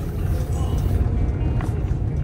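Low, steady rumble of a Class 220 Voyager diesel train heard from inside the carriage while it runs at speed, with background music over it.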